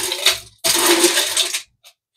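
Ice cubes being scooped and poured into a cocktail shaker cup: two clattering rushes of ice, the second about a second long, stopping shortly before the end.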